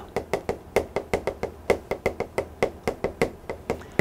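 Chalk writing on a chalkboard: a quick, irregular run of sharp taps and short scratches as the letters are written.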